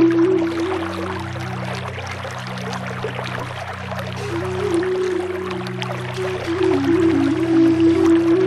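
Native American flute playing a slow melody in F# minor over a steady low drone, with a pause in the melody for a few seconds after the start before it resumes. A steady wash of running creek water sounds underneath.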